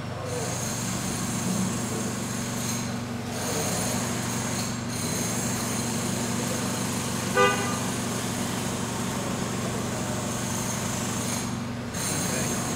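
Steady drone of vehicle engines running in a street, broken once, about seven and a half seconds in, by a single short car horn toot.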